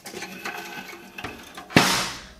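Sheet steel of a small portable pizza oven knocked once by a hand, a sharp metallic clank with a brief ringing decay near the end, after faint handling scuffs.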